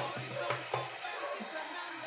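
Diced chicken breast searing in oil in a wok-style pan, giving a steady sizzle over a low, steady hum.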